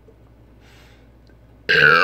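A man burps once, a short loud burp with a falling pitch near the end, after drinking carbonated malt liquor.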